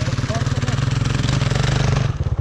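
Enduro motorcycle engines idling close by: a steady, fast, even pulsing that grows slightly louder toward the end.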